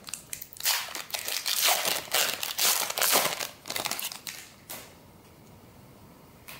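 Crinkling plastic wrapper of a trading card pack being torn open and handled, in a run of crackling bursts that stops about five seconds in.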